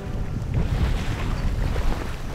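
Wind buffeting the microphone in irregular low gusts aboard a boat on rough, choppy sea.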